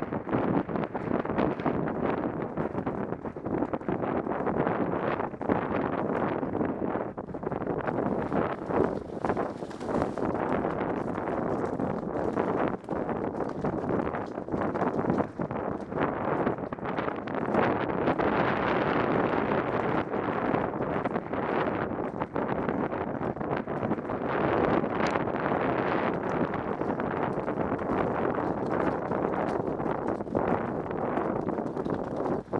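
Wind buffeting a head-mounted camera microphone, with the hoofbeats of the ridden horse carrying it running underneath.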